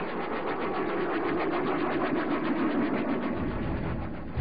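Sound effect of a Focke-Wulf rotary-jet's spinning rotor with jets at its blade tips: a fast, even pulsing drone. A low rumble joins near the end.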